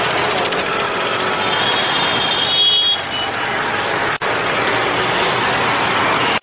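Steady outdoor street noise: road traffic and general urban hubbub, with a brief dropout about four seconds in.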